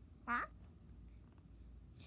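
A child's voice giving one short "Huh?" that rises sharply in pitch, about a quarter-second in.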